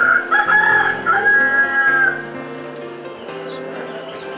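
A rooster crowing once, a few short notes and then one long held note that ends about two seconds in, over soft background music.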